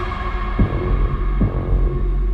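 Film-trailer score: a deep, steady bass drone under a held higher tone, with two low pulsing hits, the first about half a second in and the second under a second later.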